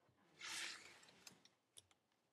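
Near silence, broken by a faint, brief rustle about half a second in and a couple of light clicks later: handling noise from the sketchbook pages or the camera as the view moves across the page.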